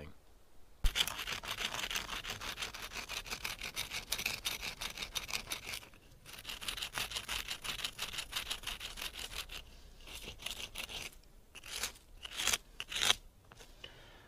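A wooden bow-drill spindle rubbed back and forth on a rock to grind its end into shape, making rapid repeated scraping strokes. The strokes stop briefly about six seconds in and pause again around ten seconds.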